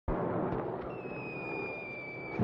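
Whistle of a falling aerial bomb: a high tone that slowly drops in pitch, starting about a second in. Under it runs a dense crackling rumble that cuts in suddenly at the start.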